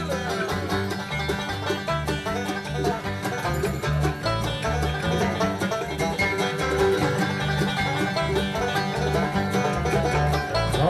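Acoustic bluegrass band playing an instrumental break between verses, a banjo picking quick runs over guitar and a steady rhythm.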